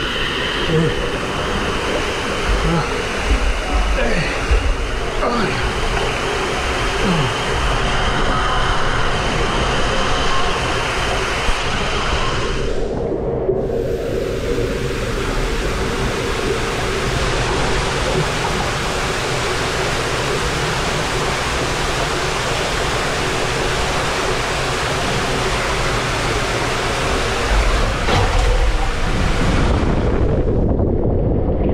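Water rushing down an indoor body water slide as a rider slides feet-first through the flume: a steady rush of water. About a third of the way in it changes abruptly to a brighter, hissier rush, with low rumbling near the end.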